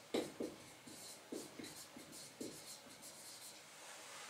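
Handwriting: a faint series of short strokes and taps, about six in the first two and a half seconds, then quieter.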